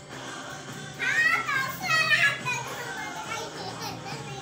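A young child's high-pitched voice calling out in two quick, gliding shouts between about one and two and a half seconds in, the loudest sound here, over a recorded song playing in the room.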